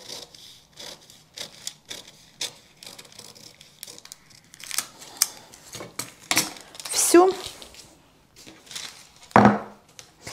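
Scissors snipping through paper pattern pieces, with paper crinkling and rustling as the pieces are handled. There are a few clinks as a metal pattern weight is moved on the cutting mat.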